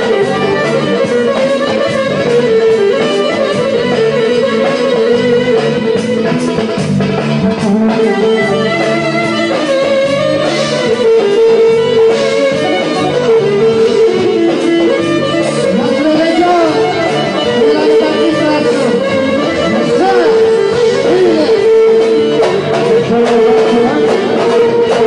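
Live band playing Thracian dance music: a lead instrument carries a bending, sliding melody over a steady drum beat, loud and continuous.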